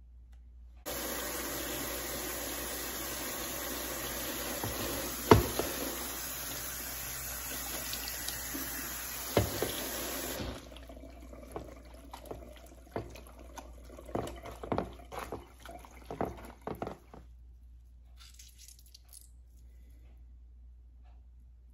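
Kitchen faucet running a steady stream of cold water onto hot cooked spinach in a colander, with a couple of sharp knocks, shut off about halfway through. Then small clicks and rustles as the wet spinach is handled and squeezed over the sink.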